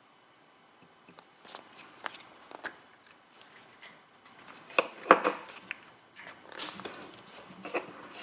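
Painted wooden nesting-doll pieces being handled: scattered light wooden clicks and knocks as the halves are pulled apart and set down, the sharpest about five seconds in, with some soft rubbing near the end.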